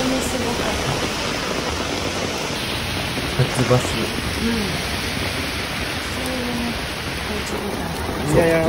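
Heavy downpour: steady rain falling on pavement and road.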